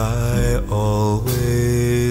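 A voice singing long, held notes of a slow love ballad over soft acoustic guitar accompaniment.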